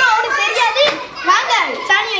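Several children talking and shouting over one another in high, excited voices.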